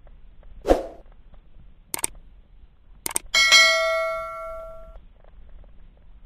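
A dull thump, then two short clicks, then a bright bell-like ding that rings on with several clear tones and fades away over about a second and a half.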